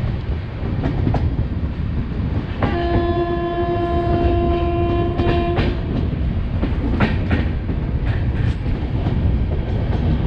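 Passenger train running at speed, heard from the coach: a steady rolling rumble with paired wheel clicks over rail joints. About three seconds in, a locomotive horn sounds one steady note for about three seconds.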